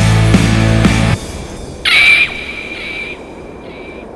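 Rock music with a heavy beat breaks off about a second in. About two seconds in, a loud high-pitched eagle-cry sound effect rings out on one held note and fades slowly.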